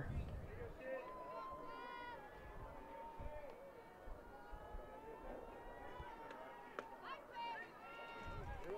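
Faint, distant high-pitched voices calling out across a softball field, some calls drawn out for a second or more, typical of players' dugout and field chatter.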